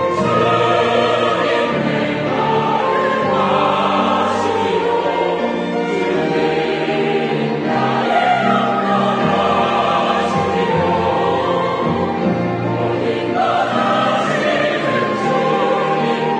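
Mixed church choir of men and women singing a Korean-language anthem in sustained phrases, with instrumental accompaniment.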